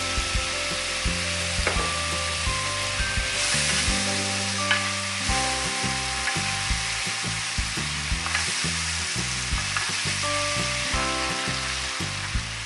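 Sauce of white wine, onion, garlic and paprika in olive oil sizzling steadily in a pan just after the wine goes in, stirred with a wooden spoon.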